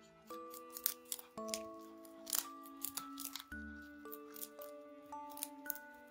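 A Flemish Giant–French Lop mix rabbit crunching a Chinese cabbage leaf, a quick, irregular run of crisp bites, over gentle background music.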